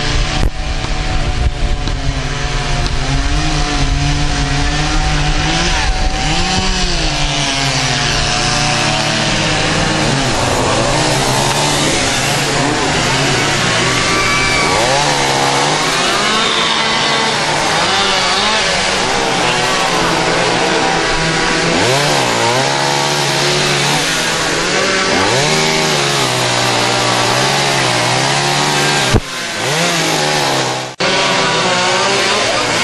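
Chainsaws running, their engine pitch rising and falling over and over as they are revved while cutting up fallen trees.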